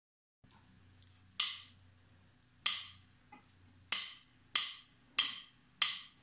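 Count-in of six drumstick clicks, two slow and then four at double speed, each with a short ringing tail, over a faint steady low hum.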